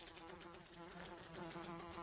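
Faint, steady buzzing of a housefly in flight.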